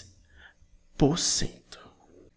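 Speech only: one short spoken word about a second in.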